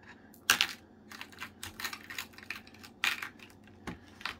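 Hard little beads clicking and clattering as they are handled, with a sharp click about half a second in, another about three seconds in, and lighter ticks between.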